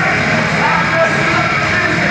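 A heavy rock band playing live and loud, with distorted guitars and drums, while a vocalist sings and yells into a microphone over them.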